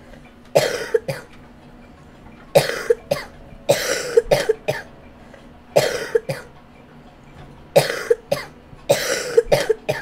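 A person coughing loudly and repeatedly: six harsh fits, each a long cough followed by two short ones, coming every one to two seconds.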